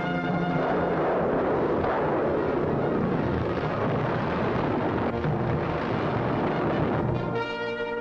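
Orchestral cartoon score with brass, mixed with a dense stretch of battle noise from cannon fire and explosions. The noise gives way to a held brass chord near the end.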